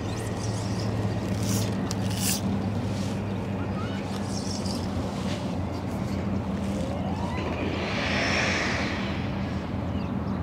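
Boat motor running with a steady low hum. A couple of sharp clicks come about two seconds in, and a brief hiss comes near the end.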